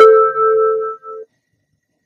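Two-note descending electronic chime of a Hannover Üstra tram's stop announcement. The second, lower note rings on and fades out about a second and a quarter in.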